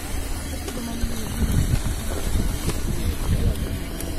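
Low, uneven rumble of wind buffeting the microphone.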